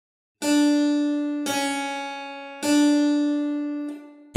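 Three single notes on a keyboard instrument, at nearly the same pitch, each starting sharply and ringing away. They demonstrate a sharp ('mi') note tuned slightly higher in Pythagorean tuning than in equal temperament.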